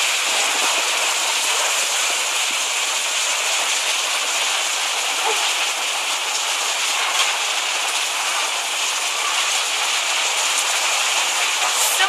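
Heavy rain pouring down, a dense, steady hiss of the downpour on the street and buildings.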